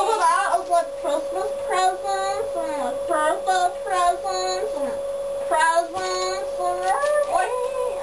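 A child singing a wordless, sliding tune in short phrases, over a steady tone held at one pitch.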